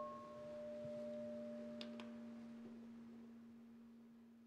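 A meditation bell ringing on after a single strike: one steady low tone with fainter higher overtones, slowly fading, sounding the start of a silent meditation. Two faint ticks come about two seconds in.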